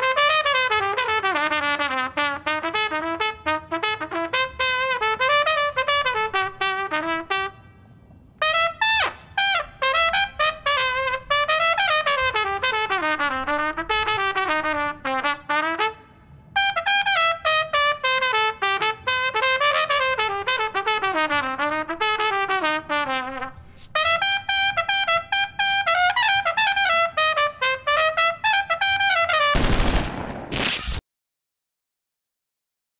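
Solo trumpet playing a quick, winding melody in three long phrases with short pauses between them.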